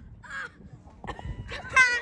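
A kid's short, high-pitched yell or shriek near the end, the loudest thing here, after a brief vocal sound about half a second in.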